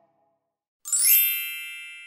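A single bright bell-like ding about a second in, ringing and slowly fading: the chime sound effect of an animated subscribe button.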